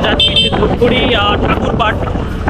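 A man talking over the steady wind rush and road noise of a moving motorcycle.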